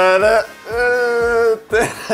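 A man singing a Dutch volkslied-style tune: a short sung note, then one long held note of about a second.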